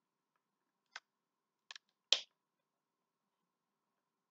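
Plastic vinegar bottle being handled, its screw cap gripped and twisted: four short sharp plastic clicks, a close pair in the middle and the loudest, a brief crackle, about two seconds in.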